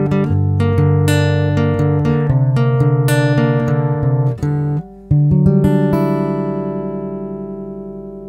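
Acoustic guitar playing the last bars of a song: picked and strummed notes, a brief pause about five seconds in, then a final chord left ringing and slowly fading.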